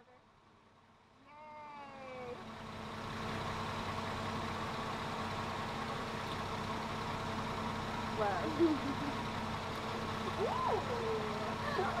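Steady hum of an idling car engine, fading in over the first few seconds and then holding level, with a couple of brief voice sounds in the last third.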